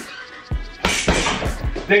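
Gloved punches landing on a hanging uppercut heavy bag, a few sharp hits with the strongest just under a second in, over background music.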